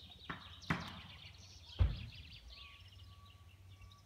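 Three sudden dull thumps in the first two seconds, the last the loudest and deepest, over faint, rapid high bird chirping.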